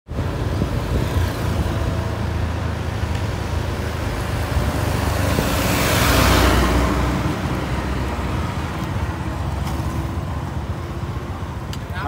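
Road traffic running steadily, with a truck passing close by about halfway through, its engine and tyre noise swelling to a peak and then fading.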